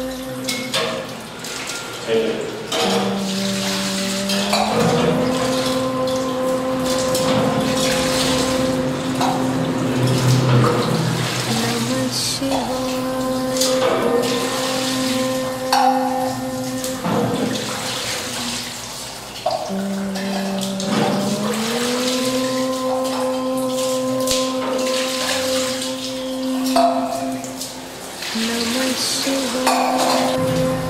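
A devotional chant held on one long steady pitch that drops and glides back up, repeating about every 17 seconds, over water splashing as it is poured over a stone Shiva lingam during abhishekam.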